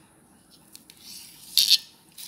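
A small kitchen knife cuts through a block of fresh paneer and scrapes on the steel plate underneath. It ends in a short, loud, hissing scrape about a second and a half in, after a second of near quiet with a couple of faint clicks.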